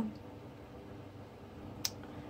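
Quiet room tone with one sharp, short click near the end.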